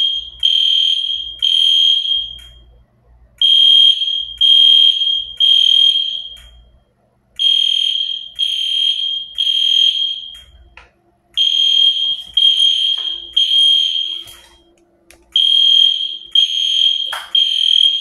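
Smoke alarm sounding the temporal-three evacuation signal: groups of three high beeps, each about half a second long, with a pause of about a second and a half between groups, repeating over and over.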